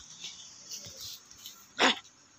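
A single short, sharp bark-like cry near the end, the loudest sound in an otherwise quiet stretch.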